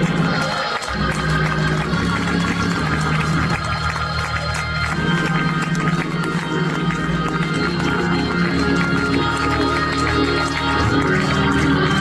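Gospel church band music: organ holding sustained chords over a steady bass line, with drums ticking lightly on top.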